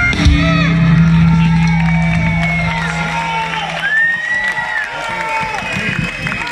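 A live band's closing hit with a low final note ringing out and dying away about four seconds in, while the crowd cheers and whoops.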